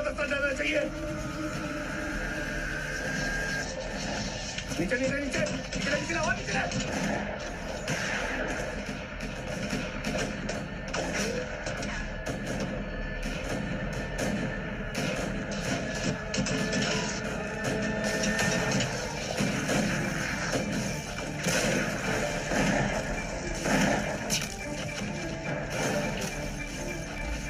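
Movie soundtrack: background music mixed with voices that form no clear words, cut through by many short, sharp hits.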